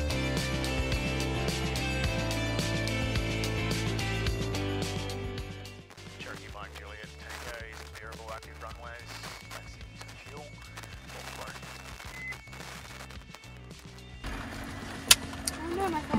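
Background music with a steady beat, fading out about five seconds in and leaving quieter, indistinct sound. Near the end, a louder steady hum starts, with a sharp click.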